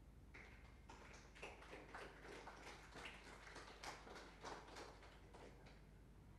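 A run of irregular soft taps and knocks for about five seconds, the sound of people moving about: footsteps and handling of chairs or objects.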